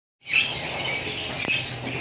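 Caged birds chirping in short high repeated calls over a steady low hum, with a single click about a second and a half in.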